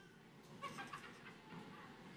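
Faint murmur of a large audience in a gymnasium, with a brief high-pitched sound, perhaps a squeak or a small voice, about half a second in.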